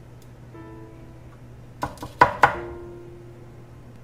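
Sparse background music with a few held, plucked-string-like notes over a steady low hum. A quick cluster of three or four sharp clicks sounds about two seconds in.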